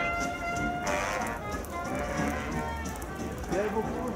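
Brass band music in the background, one held note ringing through about the first second, over a steady noisy hiss of crowd and outdoor ambience, with voices near the end.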